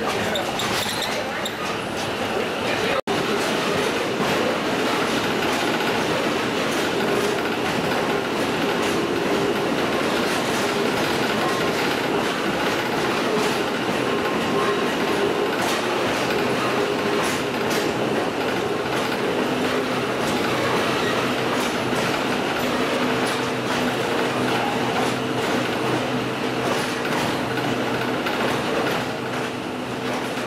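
Moving passenger train heard from on board: the steady rumble and rattle of the cars running on the track, with wheels clicking over rail joints and a faint steady whine underneath.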